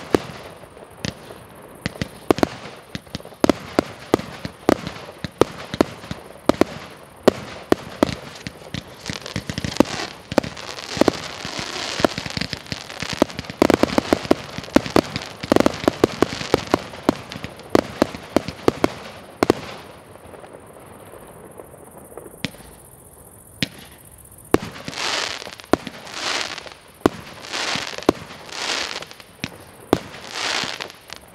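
Xplode XP4650 'Big Desaster' F3 compound firework battery (19, 25 and 30 mm tubes) firing: a rapid string of sharp shots and bursts, thickening into a dense stretch of many small pops through the middle. Near the end, after a short lull, it changes to a regular run of swelling bursts about one a second.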